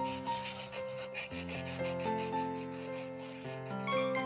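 Cartoon sound effect of a pencil scribbling: quick, evenly repeated rasping strokes over soft background music.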